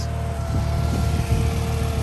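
Garden tractor engine idling steadily: a low, even hum with a faint constant whine above it.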